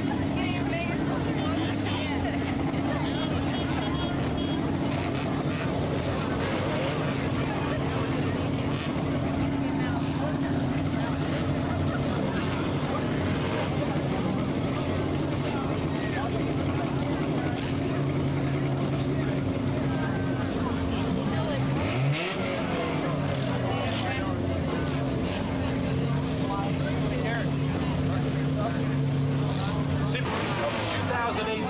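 A field of four-cylinder enduro race cars running laps on a short oval, their engines blending into a steady drone that rises and falls as cars go by. About two-thirds of the way through, one car passes close with a quick sweep in pitch.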